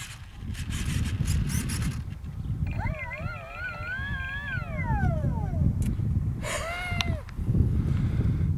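Wind rumbling on the microphone, with a long wavering, howl-like call that slides downward about three seconds in and a shorter rising-and-falling call near the end.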